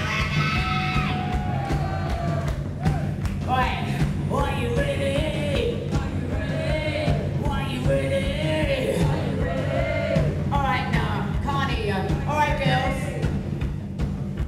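Live heavy-metal band playing a held, sustained low bass and guitar part under sung vocal lines that rise and fall. The vocal phrases come in with short gaps between them.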